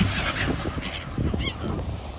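Gulls calling: a few short squawks, the clearest about one and a half seconds in, over a low steady rumble.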